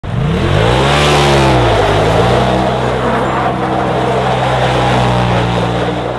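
Polaris RZR side-by-side's engine revving hard as it spins its tyres through snow: the revs climb and fall away in the first two seconds, then hold high and steady.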